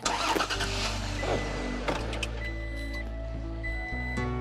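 Toyota Tacoma pickup truck's engine starting with a sudden rise and then running steadily as the truck pulls away, under background music.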